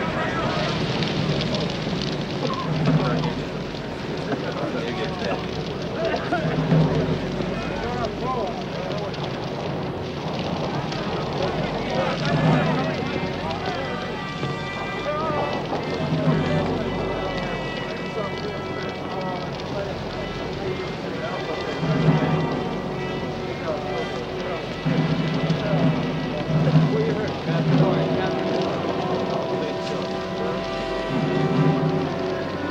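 Film soundtrack mix of a burning, disabled warship: background music with long held tones over a steady noise bed, with indistinct voices and recurring low pulses.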